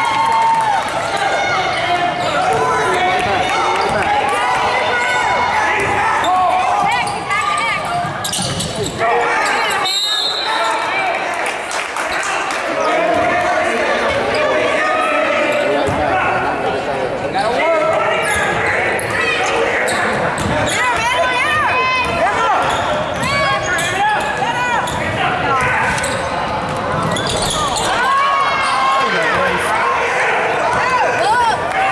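Basketball being dribbled on a hardwood gym floor, with the voices of spectators and players going on throughout in a large, echoing hall.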